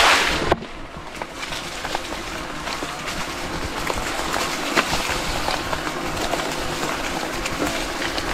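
ENGWE X20 fat-tire e-bike finishing a splash through a puddle, cut off suddenly about half a second in, then rolling along a dirt trail with steady tyre noise. Scattered sharp clacks run through the ride: the front suspension fork clattering as it hits the top of its travel.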